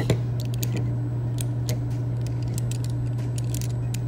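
Light metal clicks and taps of nested steel nut-driver sockets on a Klein 7-in-1 multi-nut driver being fitted together and keyed into place. The clicks come in quick scattered runs over a steady low hum.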